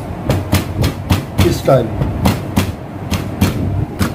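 Chef's knife chopping a red chilli into thin slices on a plastic cutting board: a steady run of sharp knocks of the blade hitting the board, about three a second.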